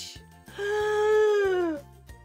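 A woman's single long, drawn-out vocal exclamation, held at one high pitch for over a second and dropping at the end, over quiet background music.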